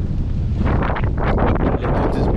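Wind buffeting the camera's microphone: a loud, steady low rumble with irregular gusty flutter.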